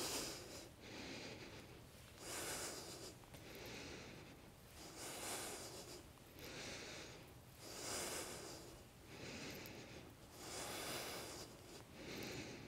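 A woman breathing slowly and audibly into a clip-on microphone: soft, even breaths in and out, about one every second and a half, alternating between a brighter, airier breath and a duller one.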